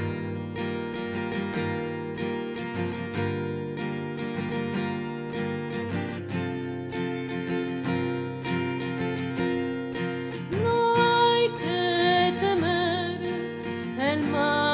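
Song with acoustic guitar plucking a steady accompaniment; about ten and a half seconds in, a woman's voice comes in over it with a long, wavering melody line sung with vibrato.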